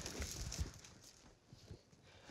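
Faint rustling and light tapping of an endoscope cable being handled and fed into the sandy mouth of a burrow, dying away about a second in.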